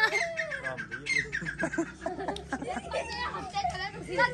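Young children's voices chattering and calling out, with a few short bird chirps mixed in.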